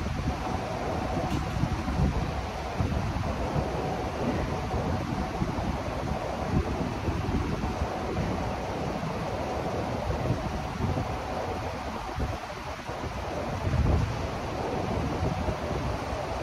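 Steady rushing airflow from a large floor fan buffeting the microphone, with a faint steady hum underneath.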